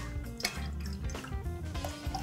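Background music, with orange juice being poured from a glass pitcher into a metal cocktail shaker tin.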